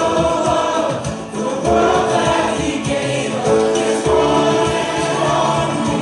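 A congregation singing a worship song with instrumental accompaniment, in long held notes.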